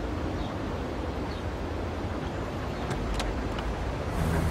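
Street ambience of city traffic: a steady low hum of cars with faint high chirps and a few brief clicks about three seconds in.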